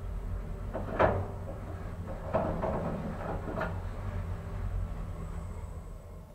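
Ride inside a 1963 Schlieren traction elevator car travelling up, with a steady low hum from the moving car. Three sharp clicks come through it, the loudest about a second in. The hum eases near the end as the car comes to a stop at the floor.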